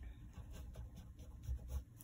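Oil pastel stick scraping across paper in short, quick strokes, a soft scratchy rubbing as the grey pastel is worked into the drawing.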